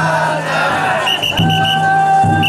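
Big taiko drum on a chousa drum float, struck in slow heavy beats, one landing about a second and a half in. The float's bearers shout a chant over it in long held calls, with crowd noise.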